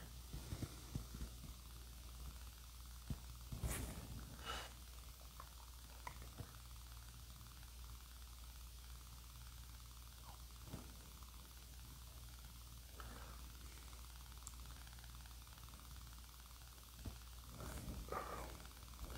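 Quiet room tone: a steady low hum with a few faint, scattered clicks and rustles.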